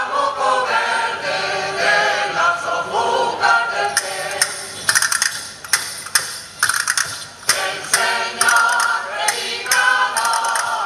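Mixed choir of men's and women's voices singing a Cantabrian folk song a cappella. For a few seconds in the middle the held chords thin out under a run of short, sharp clicks, and the full chords return near the end.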